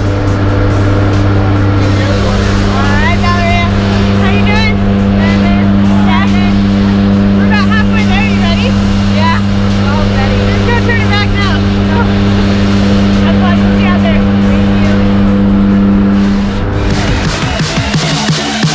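Steady drone of a jump plane's engines and propellers inside the cabin during the climb, with a voice rising and falling over it. The drone stops about a second and a half before the end, giving way to music with a beat.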